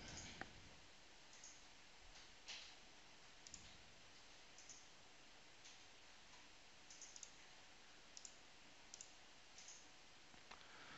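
Faint computer mouse clicks, short and scattered about once a second, over near-silent room tone.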